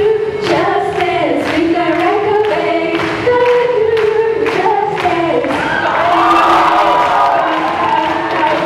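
A group of students singing together in harmony through microphones, over a steady beat about twice a second.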